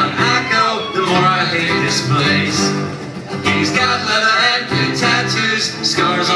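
Live band music led by a strummed acoustic guitar, playing a steady rhythm at the start of a song just counted in.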